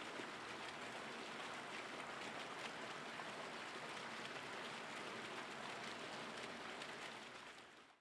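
Faint, steady hiss like rain or running water, with no tune or voice, fading out in the last second.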